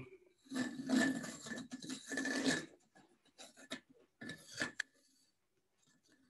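Steel point of a pair of dividers scratching a rough circle into the end-grain face of a birch blank: two long scratching strokes, then fainter scrapes and one short stroke near the end.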